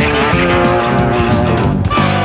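A rock band playing an instrumental stretch of a song: electric guitar to the fore over bass and drums, with cymbal hits.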